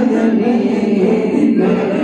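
A crowd of men chanting a naat together, their voices holding long, sustained notes without a break.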